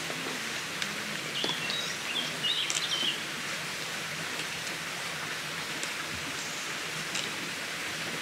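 Small woodland stream running steadily over stones, with a bird chirping a few times about two and a half seconds in.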